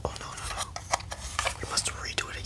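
Close-up ASMR handling sounds: fingers and a small plastic object rubbed, tapped and flicked right at the microphone. The result is a fast, irregular string of sharp clicks and crackly rustles.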